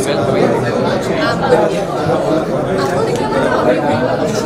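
Speech over a background of people chattering.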